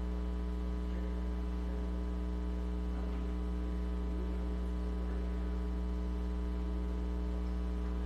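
Steady low electrical mains hum on the audio feed, with a stack of constant higher tones above it and no change throughout.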